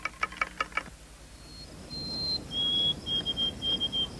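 A quick, even run of light clicks for about the first second. Then, after a short pause, a bird whistles high, clear notes: two longer ones, then a string of short notes a little lower, over faint outdoor background noise.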